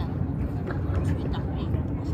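Outdoor city ambience: a steady low rumble with faint voices of people talking nearby.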